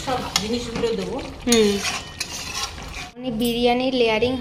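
A steel spoon stirring a thick chicken curry in a steel kadai, scraping and clinking against the metal pan a few times.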